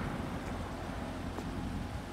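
Steady, low outdoor background rumble with no distinct events.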